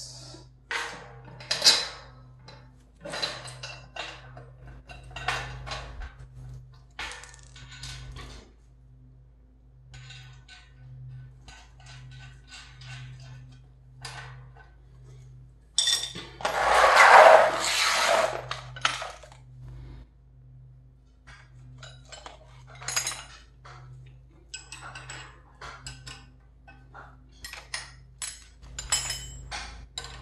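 Steel bolts, nuts and hand tools clinking and rattling against each other and the metal frame while a steel-mesh cargo rack is bolted together by hand. The clinks come in scattered short runs, with a louder, longer rattle of about two seconds midway.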